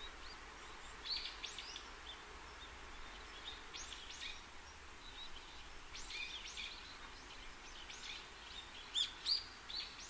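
Faint birdsong: small birds chirping in short, quick calls that come in scattered runs over a soft steady hiss, a little louder near the end.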